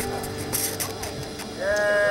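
Acoustic guitar strings ringing and fading away after a strum. Near the end a held, pitched, voice-like note starts and slides slightly down in pitch.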